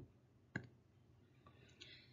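Near silence: room tone, broken by one short, sharp click about half a second in.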